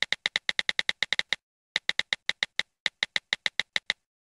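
Typing sound effect for on-screen text typing out letter by letter: a quick run of short, identical keystroke clicks, several a second, with one brief pause about a second and a half in.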